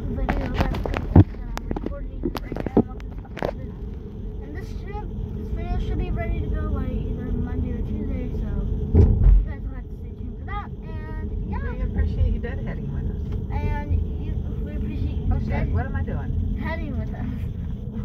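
Low, steady road rumble inside a moving car's cabin, with voices heard over it at intervals. Several sharp clicks come in the first few seconds, and a heavy thump about nine seconds in.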